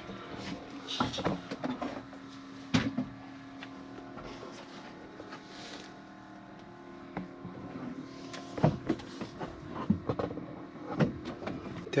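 Scuffs and knocks of someone moving around in a cramped attic, brushing against foil-wrapped flexible ducts and the wooden framing, with two sharper knocks, one about a third of the way in and one about three quarters in, over a low steady hum.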